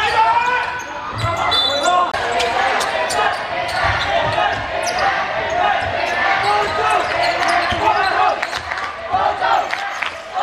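A basketball bouncing now and then on the court floor amid players' and spectators' voices calling out, echoing in a large hall.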